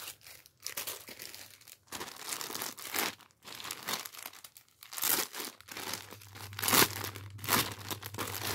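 Clear plastic packaging bag crinkling and rustling in the hands as lace trim is handled inside it, in irregular bursts that are loudest toward the end.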